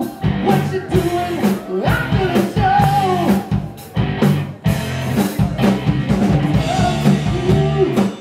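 Live rock band playing: two singers, a woman and a man, over electric guitar, bass guitar and drum kit, with steady drum strokes throughout.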